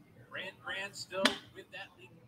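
Faint speech in short broken phrases, with one sharp click a little over a second in.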